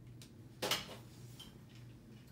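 A single sharp click about half a second in, as the dry-erase marker is put away after writing on the whiteboard, with a fainter tick just before it. Under it runs the steady low hum of a ceiling fan.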